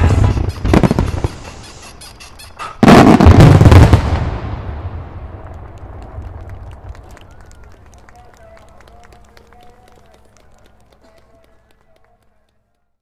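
Fireworks finale: a volley of shell bursts at the start, then a second dense, loud barrage about three seconds in. After it, a thin crackle of falling stars dies away over several seconds.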